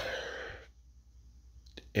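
A man's breathy exhale, a sigh, trailing off after a spoken 'uh' and fading within the first second, then quiet room tone with one faint click just before he speaks again.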